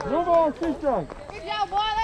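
Several voices shouting and calling out, the loudest calls in the first second sliding down in pitch, with more calls near the end.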